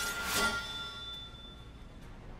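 Film soundtrack sound design: a swelling rush that peaks about half a second in, leaving a high ringing tone that fades away over the next second.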